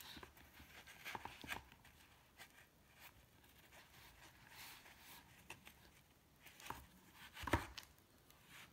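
Faint handling sounds of a cardboard board book and felt finger puppets: scattered light clicks and knocks. The loudest is a sharp knock near the end as a stiff board page is turned.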